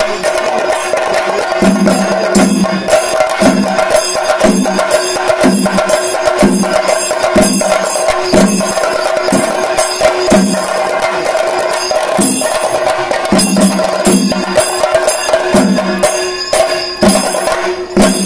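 Ensemble of Kerala chenda drums beaten with sticks in a fast, dense rhythm, with deeper strokes landing about once a second and a steady ringing tone above the drumming.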